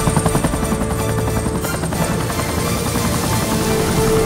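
Helicopter rotor blades chopping fast and steadily as the helicopter comes down onto a helipad, over background music.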